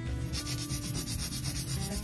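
Hand nail file rasping in quick, even back-and-forth strokes along the edge of a long square gel nail extension, shaping it. The filing starts about a third of a second in.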